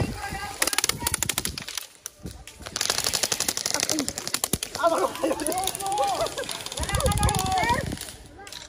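Airsoft rifles firing rapid full-automatic bursts: a short burst just after the start and a longer one of about two seconds in the middle. Voices call out during the last three seconds.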